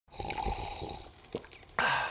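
Coffee being poured for about a second, then a short sip near the end: the first sip of morning coffee.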